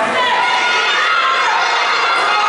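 A crowd of skaters and spectators shouting and cheering together, many high voices at once.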